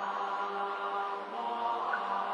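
Buddhist liturgical chanting by a large group in unison, with long held notes.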